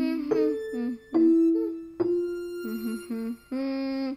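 A voice humming a slow melody, note by note, over sharply struck accompanying notes. The last note is held near the end and then stops.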